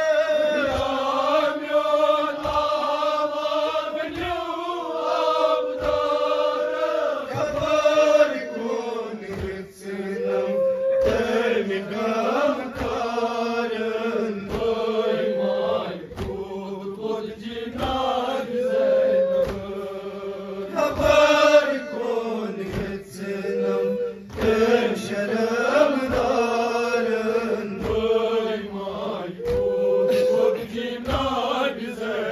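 Men chanting a nauha, a Shia lament, led by a man singing into a microphone, with long held and gliding sung lines. Under the singing, the men keep a steady beat of open-handed matam on their chests, about one stroke a second.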